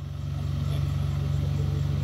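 A steady low engine hum that swells slightly at the start and then holds level.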